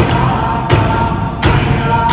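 Alaska Native frame drums struck with sticks in a slow, even beat, three strokes about 0.7 seconds apart, with group singing held over them.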